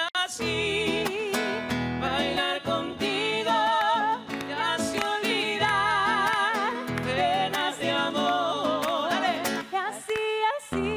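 A man singing at full voice, holding long notes with a wide vibrato, while accompanying himself on an acoustic guitar.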